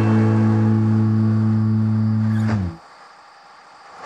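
The song's final strummed guitar chord rings out and then is cut off about two and a half seconds in, leaving only a faint background.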